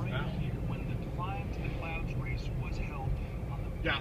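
Steady low rumble of a car's engine and tyres, heard inside the cabin while driving.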